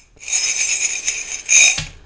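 Small metal charms rattling and jingling as they are shaken in a handheld container, swelling to a louder burst near the end.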